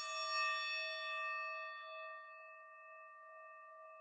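Singing bowl struck once, ringing on and slowly fading, its lowest tone wavering slightly.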